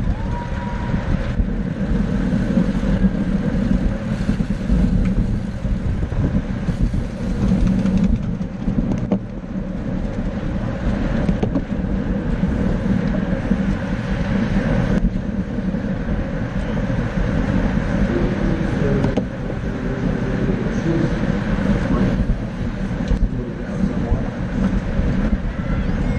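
Steady wind rush over a bike-mounted camera's microphone, with tyre and road noise from a pack of road racing bicycles riding at about 20 mph.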